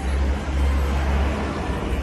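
Street background noise: a steady low rumble with hiss and no clear single event.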